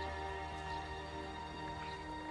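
Background music of sustained, held chords over a low bass note, slowly fading.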